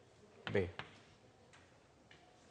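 Chalk tapping on a blackboard while writing: two short, faint clicks, the first right after a spoken word and the second about three-quarters of a second later.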